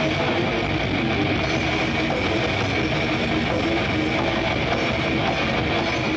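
Live thrash/death metal band playing loud through a PA, heavily distorted electric guitars and bass in a dense, unbroken wall of sound.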